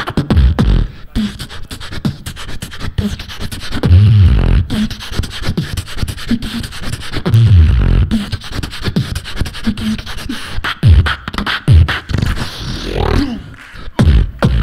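Human beatboxing through a handheld microphone and PA: a fast run of vocal kick, snare and hi-hat clicks, with deep bass swells a few seconds apart and vocal pitch slides near the end.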